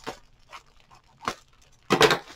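Plastic poly mailer bag handled by hand: a few short crinkles, then a louder tearing sound near the end.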